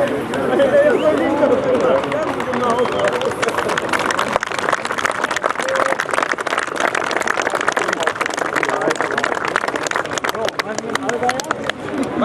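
Men talking over the WD motor plough's engine, which from about four seconds in sets up a rapid, irregular clatter of sharp knocks.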